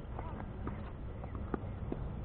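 Tennis ball being struck by rackets and bouncing on a hard court during a rally, heard as a few short, sharp pops. The loudest pop comes about one and a half seconds in and another just before the end, over a steady low rumble.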